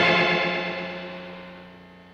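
The last chord of an indie rock song, played on distorted electric guitar, left ringing and fading away steadily.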